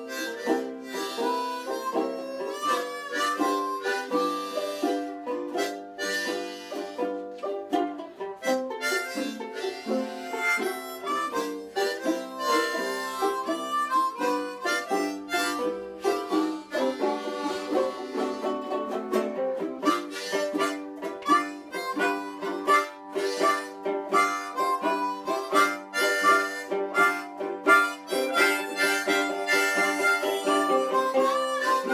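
Two harmonicas playing a blues tune together, with a ukulele and a banjolele strumming the accompaniment.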